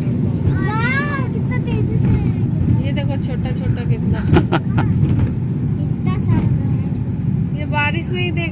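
Steady engine and road rumble inside a moving car's cabin, with faint voices of people in the car and a brief knock about halfway through.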